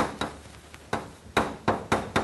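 Chalk writing on a blackboard: about six sharp, irregular taps as the chalk strikes the board.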